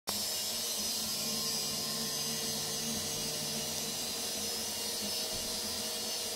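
A power tool cutting pipe outside, heard from indoors as a steady, unbroken whine.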